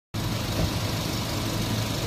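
Car engines idling, a steady low hum.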